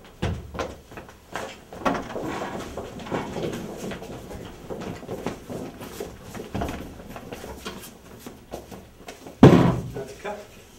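Irregular knocks and clattering, with one loud thump about nine and a half seconds in.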